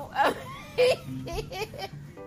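A person laughing in short bursts: two loud ones in the first second, then a few lighter ones.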